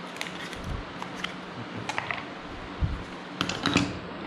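Scattered light clicks, taps and rustles of parts being handled on a table, with a few soft thumps as foam-padded carbon-tube landing gear legs are set down on a cutting mat, most of them in the second half.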